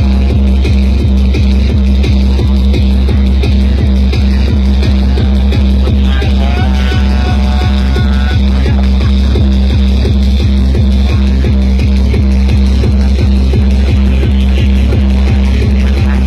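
Loud tekno dance music from a free-party sound system: a fast, steady kick drum over heavy bass, with a brief higher pitched line about seven seconds in.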